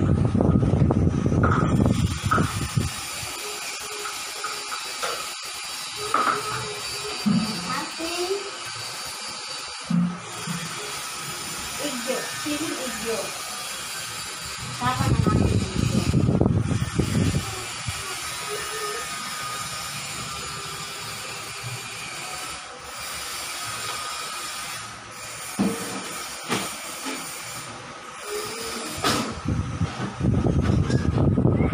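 Voices and music in the background over a steady hiss, with louder bursts of handling noise from hand-mixing in a steel bowl near the start, midway and near the end.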